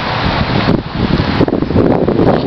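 Wind blowing across a handheld camera's microphone: a loud, steady rushing noise with a low rumble.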